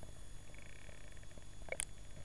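Underwater sound picked up by a camera held below the surface: a steady low rumble of the sea, a faint buzzing pulse about a quarter of the way in, and a short high squeak near the end.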